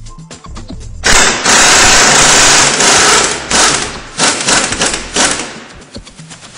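Pneumatic impact wrench running on the spindle of a Klann coil-spring compressor, unwinding it to release the strut's coil spring. It hammers loudly from about a second in, steady for a couple of seconds, then in short stuttering bursts until it stops near the end.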